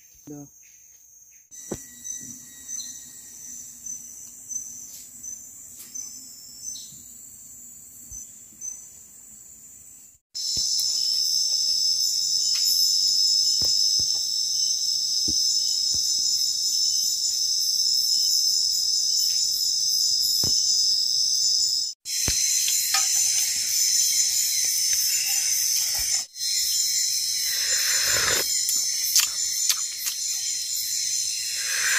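Chorus of night insects in tropical forest: a dense, steady, high-pitched trill with a fine rapid pulse. It is faint at first and becomes loud about ten seconds in, with two brief breaks.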